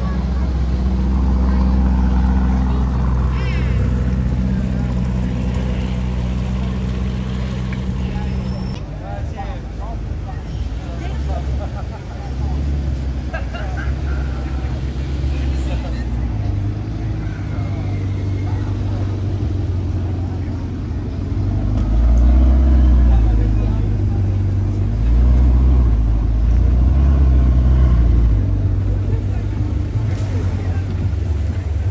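Supercar V8 engines running at low speed among a crowd. A Lamborghini Urus's twin-turbo V8 holds a steady low note for the first several seconds. Near the end a Ferrari Portofino's twin-turbo V8 comes in louder surges as it pulls away, with crowd voices throughout.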